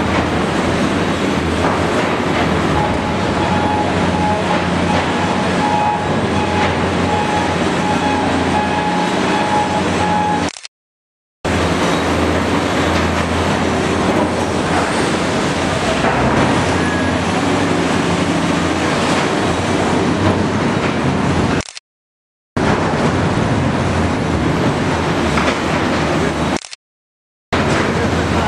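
Heavy diesel earthmoving machinery, a wheel loader and an excavator, running steadily in a rock tunnel while clearing blasted rock. The noise breaks off twice for under a second.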